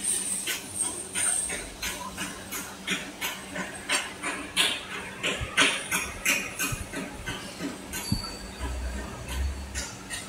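Stator varnish dipping machine running: a steady hum under fairly even clicking and clanking, about three times a second.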